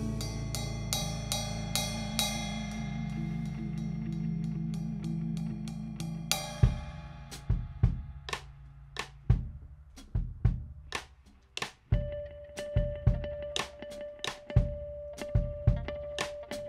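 A live band's last chord on Fender Rhodes and bass rings out and fades under cymbal shimmer. About six seconds in, a Ludwig drum kit starts on its own with spaced kick, snare and cymbal hits. A steady held note joins about halfway through.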